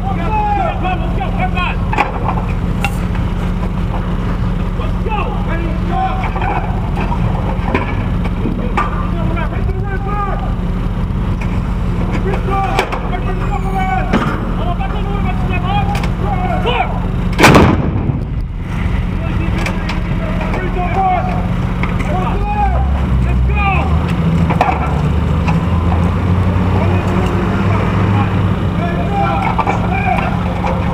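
An M777 155 mm towed howitzer fires once, a single loud blast about seventeen seconds in. Crew voices and a steady low hum run under it, with a deeper rumble building near the end.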